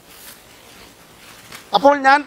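A short pause in a man's speech, filled only by a faint rustle on a clip-on microphone; he starts speaking again near the end.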